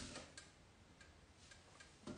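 Near silence: room tone with a few faint, scattered ticks.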